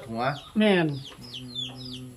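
Chickens clucking and calling in the background, short high calls repeating every fraction of a second, under a man's speech.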